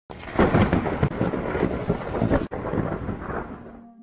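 A loud crackling rumble that starts suddenly, breaks off sharply about halfway through, then fades away near the end.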